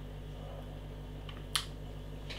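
Quiet room tone with a steady low hum, broken by one short sharp click about one and a half seconds in.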